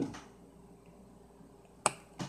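Faint room tone, then one sharp click near the end from small items being handled by hand.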